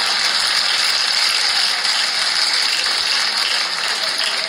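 A dense, steady rattle of rapid clicks, like a ratchet being turned quickly.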